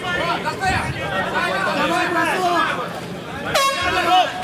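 Spectators shouting over one another, then about three and a half seconds in a short horn blast, the signal marking the end of the round.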